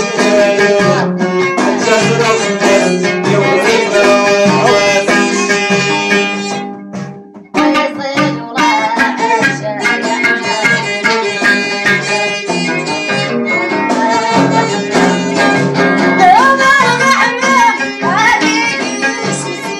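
Amazigh folk music: a plucked lotar (Moroccan lute) and hand-beaten frame drums keep a steady rhythm under singing. About seven seconds in, the music fades briefly, then comes back abruptly.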